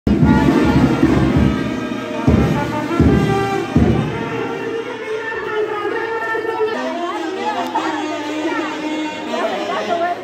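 Brass band music with loud drum beats, the playing stopping about seven seconds in, over crowd chatter.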